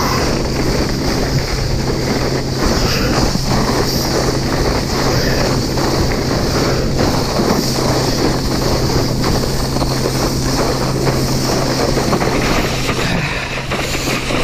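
Heavy wind buffeting the microphone over rushing water and spray from water skis skimming at speed while towed. The noise eases slightly near the end as the skier slows.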